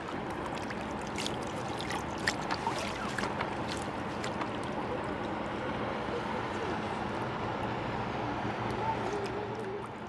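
Steady outdoor background hiss with light scattered clicks and faint distant voices.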